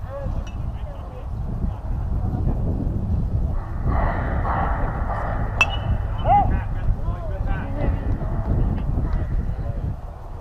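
Spectators' and players' voices and calls over a steady low rumble. One sharp crack comes about five and a half seconds in, as a pitch reaches the plate.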